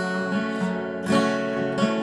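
Flat-top acoustic guitar strumming chords, with fresh strums near the start, about a second in and near the end, between sung lines.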